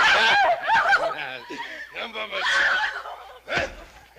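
Laughter from men, in loud bursts.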